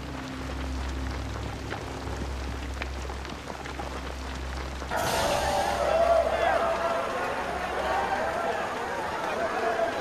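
A low steady rumble, then about halfway through a crowd of deck crew suddenly breaks into cheering and shouting that carries on to the end.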